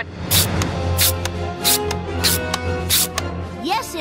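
Five evenly spaced pump strokes of a cartoon air gun, sharp and hissy, about one every two-thirds of a second, over sustained dramatic music, with a short laugh about a second in.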